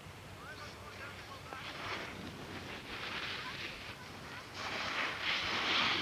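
Skis hissing and scraping over snow: a rushing hiss that comes in surges and is loudest in the last second and a half, with faint voices in the distance.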